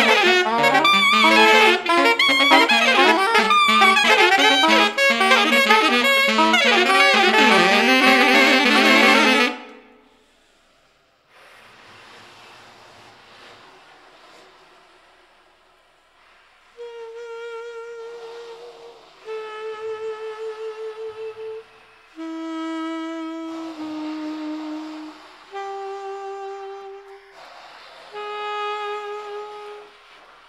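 Saxophone quartet playing free jazz. A dense, loud passage of many fast interlocking notes stops abruptly about a third of the way in, leaving soft breathy air sounds. From about halfway, a series of long single held notes follows, each a second or more, some trembling in pitch, with breathy pauses between them.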